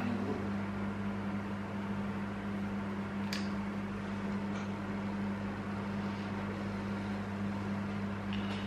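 Steady low electrical hum from a running kitchen appliance, with one faint click about three seconds in.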